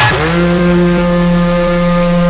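A single long, steady, low horn-like tone, held at one pitch.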